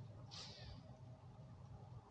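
Near silence: faint outdoor background with a low steady hum, broken by one faint, brief high-pitched squeal about half a second in.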